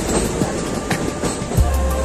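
Running noise of a passenger train on the rails, a steady rumble broken by a few sharp wheel clicks over rail joints, with another train passing close alongside. Background music plays over it.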